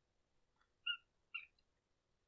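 Two short rubbery squeaks about half a second apart from the primer bulb of a Husqvarna 455 Rancher chainsaw being pressed, drawing fuel into the freshly rebuilt carburetor.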